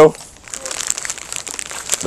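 Irregular crackling and rustling close to the microphone: handling noise from a worn camera rubbing against clothing or gear as the wearer moves.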